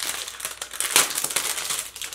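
Plastic packaging of a spiral stencil set crinkling and crackling as it is handled and opened: a dense run of small crackles, loudest about halfway through.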